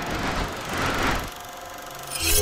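Swelling whoosh sound effect of an animated logo intro, building to a peak about a second in and then dropping away.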